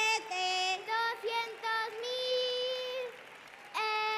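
Two children take turns singing out lottery numbers and prize amounts in the traditional sing-song chant of the Spanish Christmas lottery draw. The notes are long and held, with a short break about three seconds in, then another long held note near the end.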